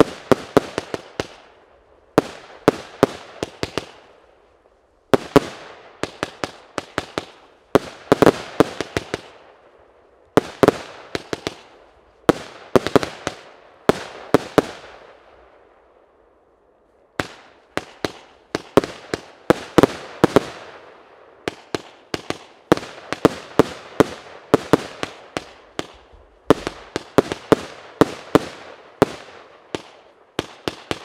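Lesli Präsident Pyro firework battery firing shot after shot. Every two to three seconds there is a sharp report, followed by a quick run of smaller pops and a fading hiss. There is a short lull a little past halfway.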